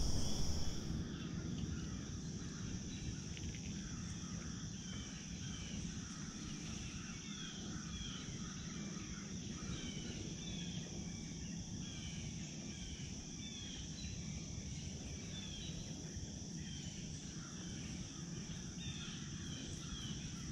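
Woodland ambience: insects singing in a steady high drone, with a bird repeating a short chirp roughly once a second, over a low background rumble.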